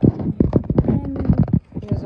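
Handling noise as a phone and spiral sketchbook are moved about: a quick run of irregular knocks and taps, with rubbing in between.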